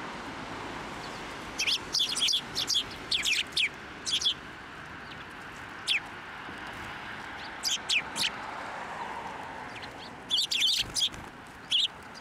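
Eurasian tree sparrows chirping: bursts of quick, high chirps in clusters, about a second and a half in, again around eight seconds, and near the end, with a few short downward-sliding notes between, over steady background noise.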